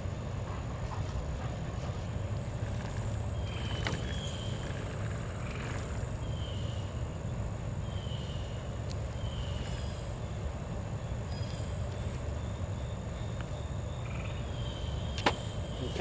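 Steady low outdoor rumble, like distant traffic, under a thin steady high tone. Several short high chirps come through, and there is one sharp click near the end.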